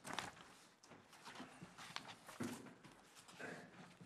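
Faint, irregular rustling and handling of paper sheets and bound documents, with a few soft knocks.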